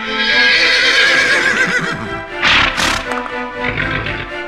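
Cartoon horse whinny sound effect: a long, wavering neigh, followed about two and a half seconds in by a short, rough burst of noise, over background music.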